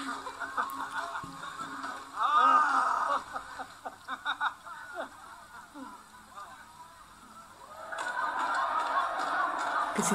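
TV drama soundtrack picked up from a small speaker, thin and muffled: men's voices and laughter, then a steady crowd din that builds near the end.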